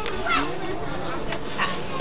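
Background chatter of a crowd of children, with a few faint voices coming through briefly during a lull in the close speech.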